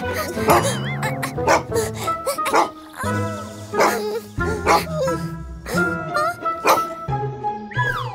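Cartoon dog barking and yipping over background music with regular percussion hits.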